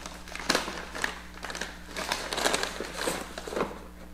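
Plastic shopping bag crinkling and rustling in irregular crackles as a box is pulled out of it, dying down near the end.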